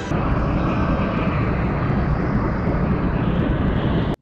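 Science-fiction film sound effect for a glowing energy transformation: a loud, deep, steady rushing roar with no music or voices over it.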